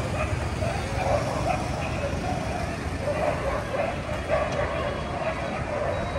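Busy outdoor street ambience: a crowd of voices chattering, with a motor scooter's engine passing close by and fading at the start, over a low traffic rumble.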